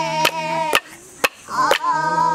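Singing in time with sharp wooden clicks struck about twice a second, like clapsticks, over a low steady drone. The voice and drone drop out for a moment in the middle while the clicks carry on, then come back in.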